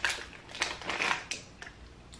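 Close-up chewing of a crunchy chocolate-coated biscuit (a Tim Tam), with four or so crisp crunches in the first second and a half.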